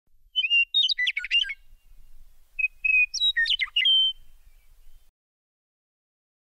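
Songbird singing: two short phrases of quick, jumping whistled chirps, cut off suddenly about five seconds in.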